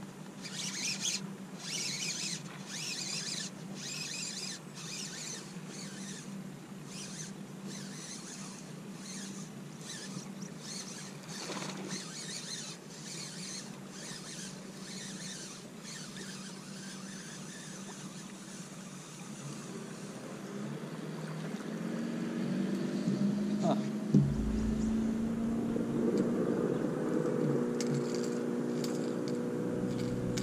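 Short sharp splashing or clicking sounds, about one a second, while a hooked bass is fought on a bent rod. In the second half a motorboat engine's hum grows steadily louder, with a single thump about 24 seconds in.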